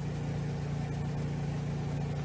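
A steady low engine-like hum at an even level, with no change in pitch.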